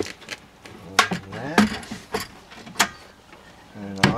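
Sharp metallic clicks and knocks, half a dozen or so spread across a few seconds, as a stovetop moka pot is handled and set up on a portable butane stove.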